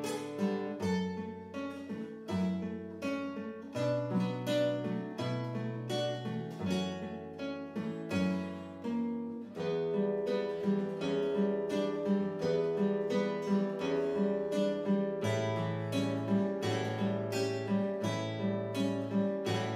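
Nylon-string classical guitar played solo with the fingers: an instrumental passage of plucked melody notes over changing bass notes.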